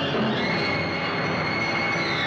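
Loud orchestral trailer music building to a climax: a long high note held over a dense rushing wash of sound, starting about half a second in.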